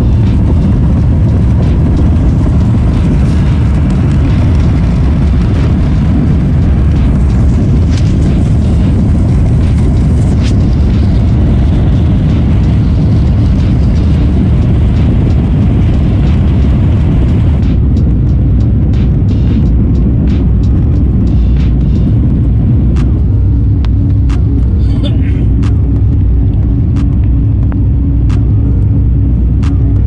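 Airbus A350-1000 takeoff heard from inside the cabin: loud, steady engine noise with rumbling and knocks from the runway. About 18 seconds in the rumble and hiss fall away as the wheels leave the ground, and a steady engine drone carries on into the climb.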